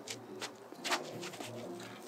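A disc golfer's throw from a concrete tee pad: two short, sharp sounds about half a second and a second in. Under them is a quiet outdoor background with a low bird call.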